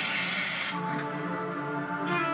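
Bowed viola holding long, steady notes, played through reverb effects. A hiss sits under the notes and dies away under a second in.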